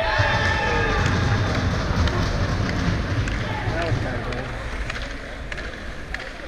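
A player's loud shout on the ice, its pitch falling over about a second, over the scrape and rumble of skates and scattered clacks of sticks in a scramble around the goal.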